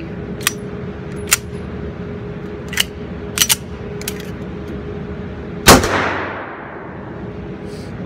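A single loud 9mm pistol shot a little past the middle, with a long fading echo off the range, from a 1911 fired one-handed with no magazine in the gun. Several fainter, sharp clicks and cracks come before it, over a steady hum.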